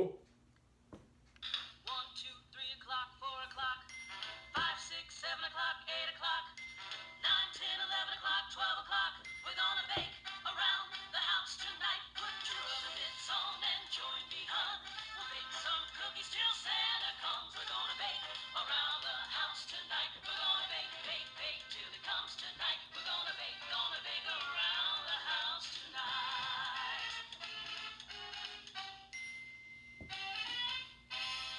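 Light-up Hallmark Keepsake Christmas ornament playing a recorded song with singing through its small built-in speaker, thin and without bass. The song starts about a second and a half in and stops just before the end.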